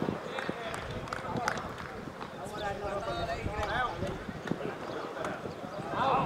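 Indistinct voices of players and onlookers talking and calling out across an open football pitch, over a steady low rumble with scattered short knocks.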